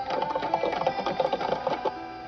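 Rapid, steady clatter of ticks, about ten a second, over sustained held tones: a mechanical-sounding rhythmic passage in a film trailer's soundtrack.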